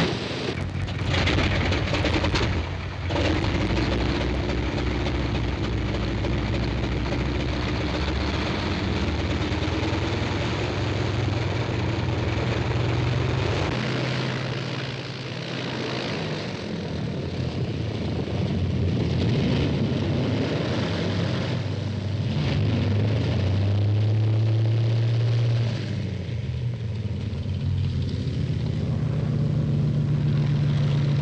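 Piston engines of a Vickers Wellington bomber running on the ground, a steady drone whose pitch steps up and down several times as the engines are run up.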